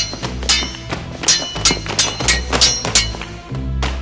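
Steel rapier blades clashing in a run of sharp, ringing strikes, roughly one every half second, over film score music.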